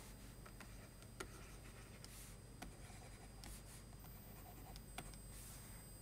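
Faint scratching strokes of a stylus on a writing tablet as handwritten text is erased and rewritten, with a few light clicks in between.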